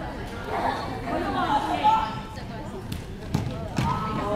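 Voices calling out in an echoing sports hall, with a couple of sharp knocks near the end from a basketball bouncing on the wooden court.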